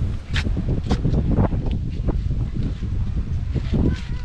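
Wind buffeting the microphone as a steady low rumble, with a few sharp clicks or knocks in the first second and a half.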